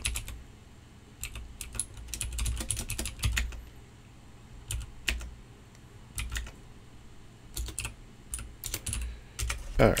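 Typing on a computer keyboard: irregular keystrokes with pauses between them and a quicker run of keys about two to three seconds in.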